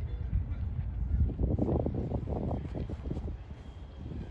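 Wind buffeting the phone's microphone: a low rumble that gusts rougher in the middle.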